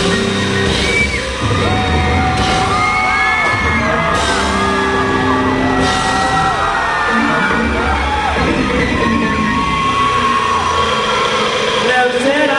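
Live rock band playing loudly, with drums and bass under yelled, whooping vocals.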